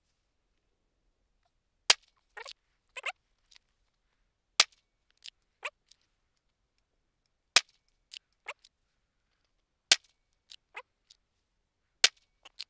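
Pistol shots fired singly, one about every two and a half to three seconds: four sharp reports, each followed by a few fainter cracks, and a fifth right at the end. This is a new shooter drawing and squeezing off one slow, deliberate round at a time.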